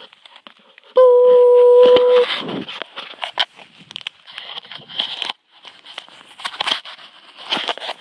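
A phone's microphone rubbed and knocked as the phone is handled against clothing, giving irregular rustling and clicking. About a second in, a loud steady beep lasts just over a second.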